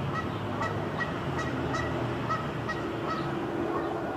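Birds calling: a quick run of short, repeated calls, several a second, over a faint steady hum.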